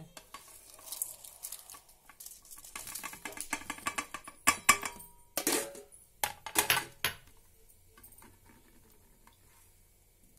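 Garlic cloves, dried red chillies, green chillies and whole spices tipped from a ceramic plate into a stainless steel mixing bowl, clicking and clattering against the metal. The clicks come thick and fast, loudest in the middle, and stop after about seven seconds.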